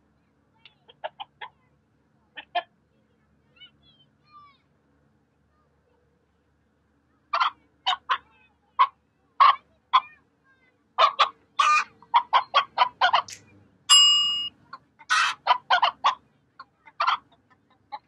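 Domestic hen clucking in short, sudden calls: a few scattered clucks at first, then a quick, busy run of clucks through the second half, with one brief held note partway through.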